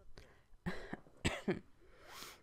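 Two short cough-like bursts from a person's voice, about half a second apart.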